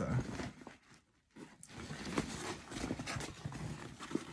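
A fabric shoulder bag being handled and turned over: irregular rustling of the bag's fabric with small clicks and knocks as a zip is worked, starting about a second in after a brief pause.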